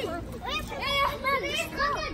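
Children's voices at play: a run of short, high-pitched shouts and calls with no clear words.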